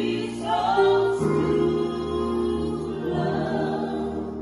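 A small mixed group of voices singing a gospel worship song in harmony through handheld microphones and a PA loudspeaker, holding long notes with a chord change about a second in, and growing softer toward the end.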